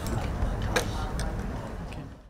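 Camera shutters clicking several times, the sharpest about three-quarters of a second in, over the low hum and faint murmur of a meeting room. The sound fades down near the end.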